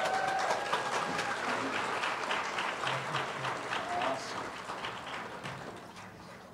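Congregation applauding, with a few voices cheering near the start; the clapping thins out and fades toward the end.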